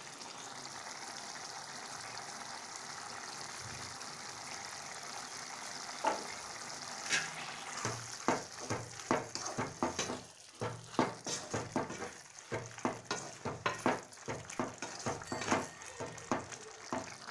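Minced chicken masala cooking in a metal pot with a steady sizzling hiss. From about six seconds in, a wooden spatula stirs and scrapes against the pot in quick, irregular strokes.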